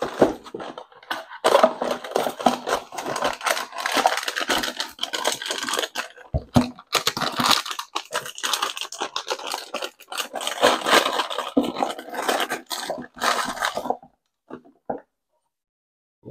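Packaging being handled while engine parts are unboxed: irregular rustling, scraping and tearing with small clicks and knocks, stopping about two seconds before the end.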